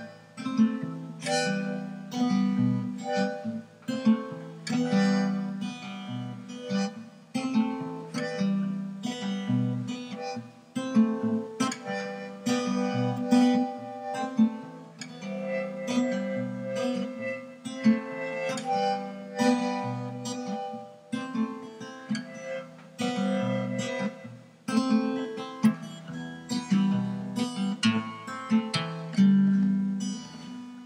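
Music: an acoustic guitar strummed in a steady rhythm of chords, without singing.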